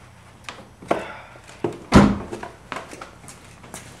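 An interior door being handled: a string of clicks and knocks, with one heavy thump about two seconds in.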